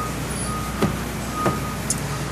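Hyundai Elantra front door latch clicking open as the handle is pulled: two sharp clicks about two-thirds of a second apart. Under them run a steady low hum and a thin high tone that comes and goes.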